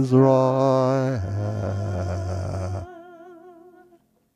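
Soprano voice singing with wide vibrato over held organ chords, ending a piece. The organ releases about three seconds in and the sung note trails off just after.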